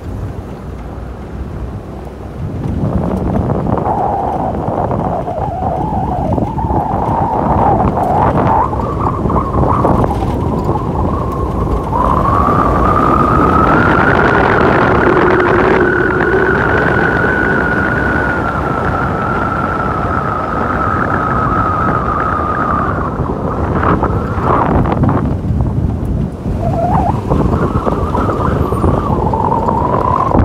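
Vehicle driving on a dirt road: steady tyre and road noise with wind, under a whining tone that climbs in pitch about twelve seconds in, holds, and drops away a few seconds before the end before briefly returning.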